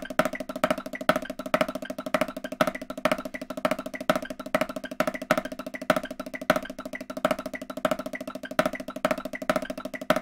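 Snare drum played with sticks in a continuous double-stroke long roll. Louder accented strokes fall in a syncopated pattern over the even roll.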